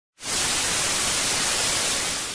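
Television static: a steady hiss of white noise from an untuned screen, starting abruptly a moment in.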